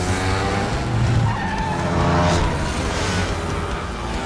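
Motor scooter engines revving, their pitch rising and falling, with tyres skidding through the turns, over background film music.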